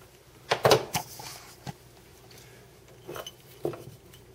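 Handling noise from a glass wine bottle and its light-string wires on a countertop: a quick cluster of knocks and clinks about half a second in, a single one a little later, and two more near the end.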